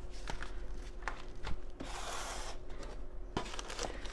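Plastic crinkling and rustling as a deflated plastic inflatable tube is folded by hand, then a cardboard box is handled and opened, with a few light knocks along the way.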